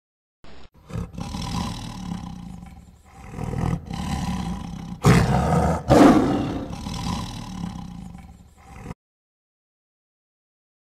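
Tiger roaring: four long calls one after another, the loudest about five to six seconds in, cutting off abruptly about a second before the end.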